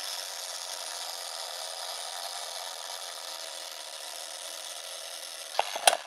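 Vintage film projector sound effect: a steady hissing rattle, with a few sharp clicks near the end.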